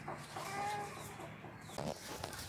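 A few short bird calls, one held steady for a moment about half a second in, with a brief rapid pulsing just before the end.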